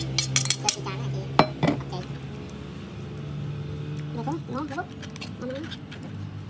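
Metal spoon clinking and scraping against a steel bowl and a clay mortar as dressing is scraped into the mortar and stirred: a quick run of clinks in the first second and two sharper clinks about a second and a half in, then quieter.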